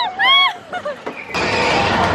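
High-pitched shrieks from a rider on a spinning roller coaster. About a second and a half in, a sudden loud rushing noise of the coaster car speeding along the track sets in and holds steady.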